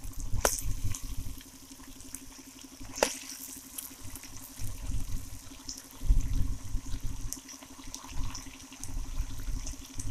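Chicken gravy simmering and bubbling in a pan, with low rumbles coming and going and two sharp pops, about half a second in and at about three seconds.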